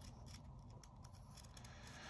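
Near silence, with faint light rustles and ticks of hands moving on paper comic book pages.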